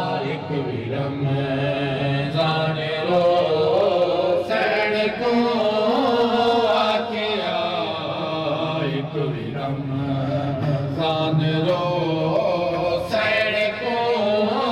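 Men's voices chanting a noha, a Shia mourning lament, in a slow, continuous sung melody.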